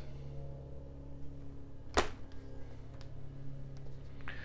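Steady low hum with a single sharp knock about two seconds in, as the Traxxas Maxx RC monster truck is turned over and set on the workbench.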